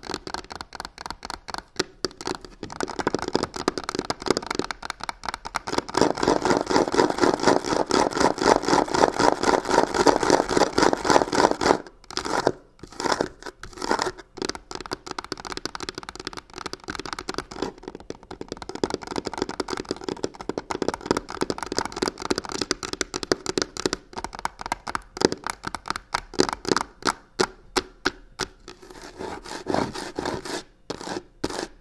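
Long fingernails scratching fast and hard on a crocodile-textured leather-look box, many quick strokes a second. The strokes get louder for several seconds, break off briefly a little before halfway, then carry on.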